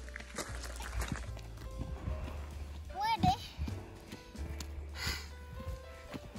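Soft background music with a steady low bass, over footsteps crunching on a gravel track. A brief high voice sounds about three seconds in.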